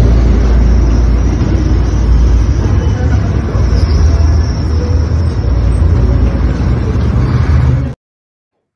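Loud, steady rumble of a metro train and station, recorded on a phone, heaviest in the low end. It starts and cuts off abruptly.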